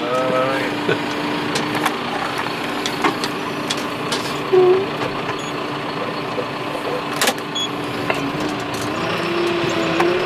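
John Deere 6330 tractor running steadily, heard from inside its cab: an even engine hum at one pitch that rises slightly near the end, with a few sharp clicks.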